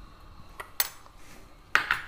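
A steel spoon clinking twice against a stainless steel pot while salt is added, the second clink louder with a short ring.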